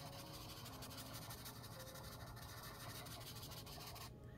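Faint, steady scratching of a colored charcoal pencil shading back and forth on a printed coloring-book page.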